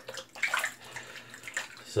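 Synthetic shaving brush working soap lather on a bearded face, an uneven wet brushing noise.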